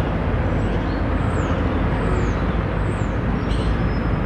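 Steady outdoor city background noise, with about four faint, short, high-pitched chirps falling in pitch, spaced under a second apart.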